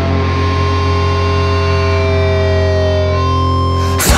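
Hardcore punk recording: distorted electric guitar and bass sustaining a held note, with thin whining feedback tones over it, some sliding slowly in pitch, and no drums.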